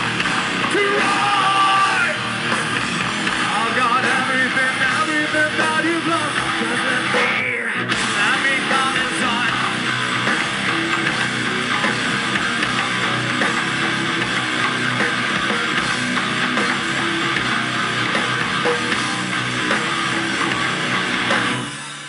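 A rock/metal band playing live and loud, with distorted electric guitars, bass and drum kit, heard from the audience. There is a very short break in the music about seven and a half seconds in, and the song ends just before the end.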